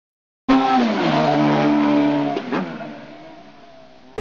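Motor vehicle engine at high revs, starting suddenly about half a second in, its pitch stepping down a couple of times before it fades away over the last second and a half.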